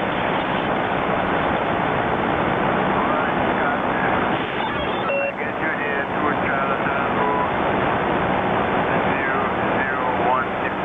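HF radio receiver hiss and static through the transceiver's speaker, thin and narrow-band, with a weak, barely readable voice from a distant station under the noise and a few short whistling tones about halfway through.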